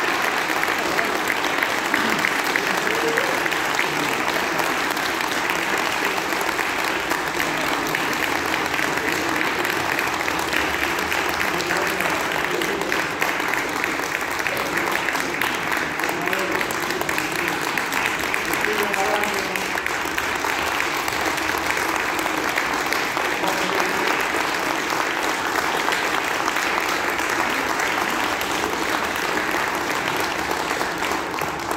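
Audience applauding steadily, a dense even clapping that holds through the whole stretch, with voices in the crowd beneath it.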